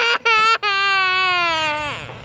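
A toddler boy whining: two short high cries, then one long wail that slowly falls in pitch and stops near the end.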